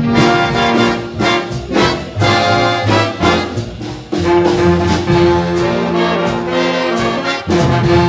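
A high school jazz band playing live: brass over a drum kit, with cymbal and drum strokes keeping time. About four seconds in, the brass section comes in louder with long held chords.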